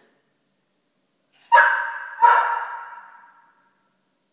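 A golden retriever barking twice, about three quarters of a second apart, each bark trailing off with an echo.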